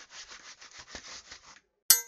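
Cartoon sound effects: a rough scraping, rubbing noise with a quick uneven pulse for about a second and a half, then a sudden sharp clang that rings briefly near the end.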